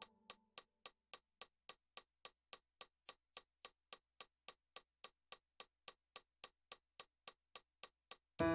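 Faint metronome clicking steadily at about three and a half clicks a second, near 215 beats a minute, with no other notes sounding; the last piano note dies away at the start.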